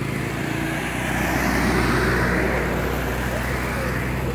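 Road traffic: a motor vehicle passes, its engine and tyre noise swelling to a peak about halfway through and then fading, over a steady low engine hum.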